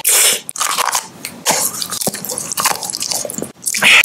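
Crunchy snack being bitten and chewed close to the microphone: a loud crunch at the start, a run of irregular crunchy chews, then another loud crunch just before the end.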